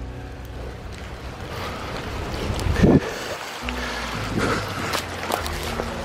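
Rainwater runoff running in a small stream beside a woodland path, heard under soft background music of held chords, with a brief thump about halfway through.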